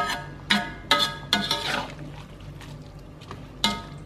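Metal spatula clanking against an aluminium wok while stirring, about five ringing metallic strikes: four in the first second and a half and one more near the end.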